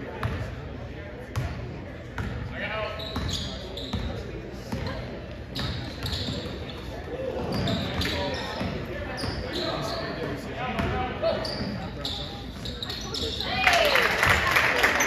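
A basketball bouncing on a hardwood gym floor as it is dribbled, amid voices of players and spectators echoing in a large gym; the noise grows louder near the end.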